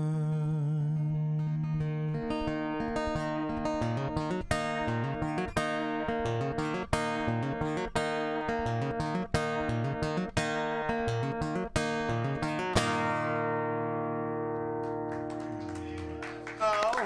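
Steel-string acoustic guitar playing the instrumental close of a folk song: single picked notes about once a second, then a final chord that rings out and fades away.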